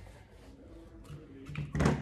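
Small plastic modelling-clay tubs being handled and knocked down onto a table, a short clatter near the end.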